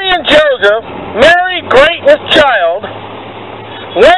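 A street preacher's voice shouting in loud, drawn-out phrases that rise and fall in pitch. It breaks off about three seconds in, leaving a low steady hum underneath.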